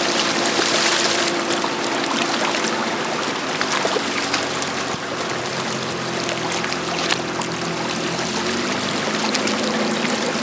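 1987 Force 35 HP outboard motor running steadily as the pontoon boat moves along, with a constant rush of water and wind over it. The lowest part of the engine note drops away about a second before the end.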